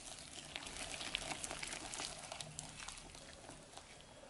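Wire whisk beating thick chocolate madeleine batter in a glass bowl: a fast, continuous run of small wet clicks and scrapes as the wires stir the batter and tap the glass, busiest in the middle and easing off near the end.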